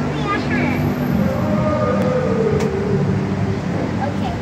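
A motor engine running steadily nearby, a low even drone, with a child's voice over it: a few quick sounds at the start and a drawn-out vocal tone in the middle.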